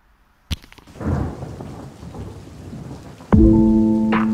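Thunderstorm sound effect: a low rumble of thunder over rain. About three seconds in, music comes in with a loud held chord and a deep bass hit.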